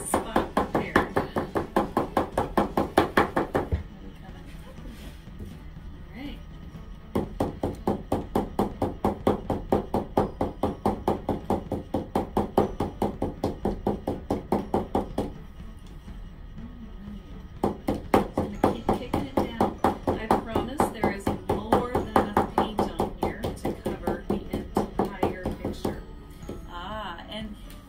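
Stretched canvas knocked rapidly and rhythmically against a table to spread freshly poured acrylic paint, several hollow knocks a second, pausing twice.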